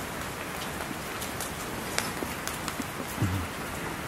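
Wood fire crackling: a steady hiss with scattered sharp pops.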